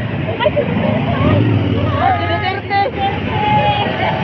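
Motorcycle engines of a motorcade running with a steady rumble, with people's voices calling out over them from about halfway through.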